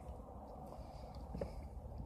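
Faint mouth sounds of a bite of steamed potato being taken off a fork and chewed, over a steady low hum, with one soft click about a second and a half in.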